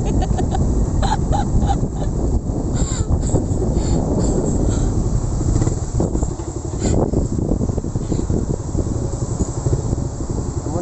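Motorcycle engine running while under way, mixed with a dense low rumble and flutter of wind on the microphone.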